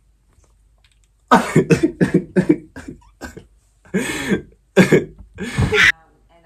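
A man coughing: a quick run of about seven short coughs, then three more spaced a little apart.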